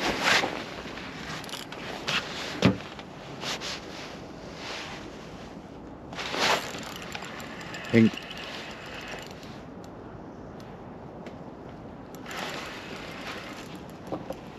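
Rustling and handling noise from clothing and fishing tackle while a hooked fish is played on a bent rod, with a few sharp knocks scattered through it and a short vocal sound about eight seconds in.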